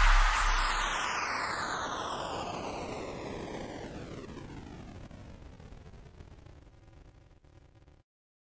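The closing tail of a dubstep track: after a final impact, a hissing wash of noise with a falling, whooshing sweep fades away over about seven seconds. A deep sub-bass drops out about a second in.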